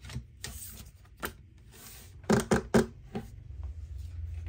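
Tarot cards being handled and laid down on a wooden tabletop: short rustles of card stock and a few sharp taps, the loudest three in quick succession about two and a half seconds in.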